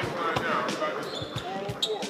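Basketballs bouncing irregularly on a hardwood gym floor, with voices chatting in the background.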